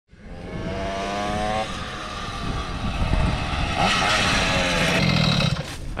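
Small two-stroke moped engines running while riding, fading in from silence, with a steady engine tone that shifts in pitch about two seconds in.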